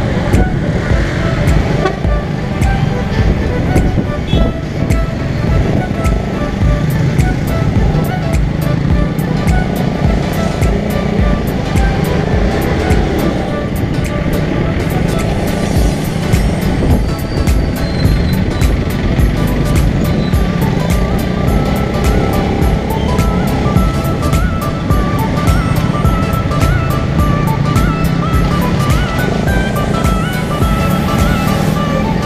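Suzuki GSX-R150's single-cylinder engine running steadily while riding in traffic, recorded onboard, with a background music track with a steady beat over it.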